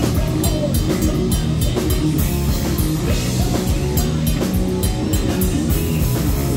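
A live heavy metal band playing loud: distorted electric guitars over a drum kit, keeping a steady driving beat.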